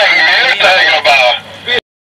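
Loud wordless shouting from a person's voice: three drawn-out calls in a row, ending abruptly near the end.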